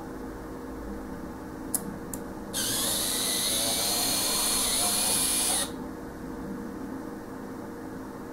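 Z-scale model locomotive running along the track, its tiny motor and wheels giving a high whir that grows loud for about three seconds in the middle, then drops back, over a steady low hum. Two faint clicks come shortly before the loud part.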